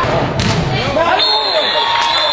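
A soccer ball is struck hard once, about half a second in, amid shouting voices. A steady high-pitched tone sets in a little over a second in.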